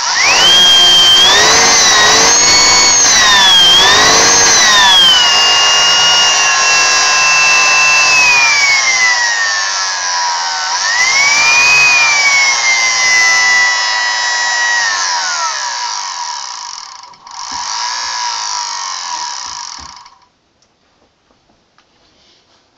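Vacuum cleaner's brushed universal motor, fed straight to its brushes from a variac, running at high speed with a loud whine that climbs and falls in pitch several times as the voltage is turned up and down, its brushes sparking at the commutator. Near the end the whine drops away, and the motor noise cuts off suddenly about 20 seconds in.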